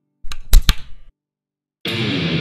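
A guitar cable's jack plug pushed into an electric guitar's output jack, giving a few loud pops and crackles through the amplified rig. Near the end, distorted heavy-metal electric guitar playing starts abruptly.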